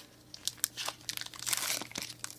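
Foil trading-card pack wrapper crinkling in the hands as it is worked open, a run of sharp crackles that thickens about one and a half seconds in.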